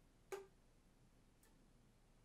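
Flute keys clicking as a finger presses down onto a key and lifts off again, with no air blown: one sharp click about a third of a second in and a fainter one about a second and a half in, otherwise near silence.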